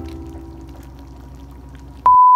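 Thick crab sauce bubbling as it simmers in a wok, under the last notes of background music fading away.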